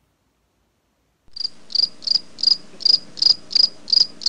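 Cricket-chirping sound effect: evenly spaced high chirps, about three a second, starting abruptly about a second in after dead silence and cutting off just as abruptly. It is the 'crickets' gag standing in for a silent pause while an answer is awaited.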